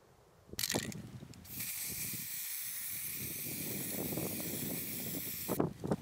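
A brief rattle, then an aerosol spray-paint can hissing steadily for about four seconds before cutting off, as a steel target is repainted white.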